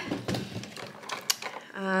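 Makeup items clicking and rattling against one another as a hand rummages through a vanity drawer and lifts out a bottle of setting spray, with a couple of sharper clicks among the light handling noise.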